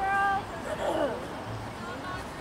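High-pitched voices calling out across the field: a short held shout at the start, then a wavering call about a second in.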